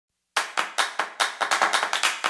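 Sharp hand claps in a quick rhythm, starting a moment in and speeding up: the percussive opening of an electronic background music track.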